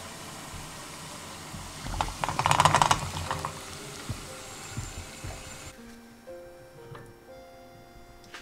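Water boiling hard in a pan, a steady bubbling hiss, with a louder burst of bubbling and splashing about two seconds in as a glass jar is lowered upside down into it. The boiling cuts off about six seconds in, with light background music throughout.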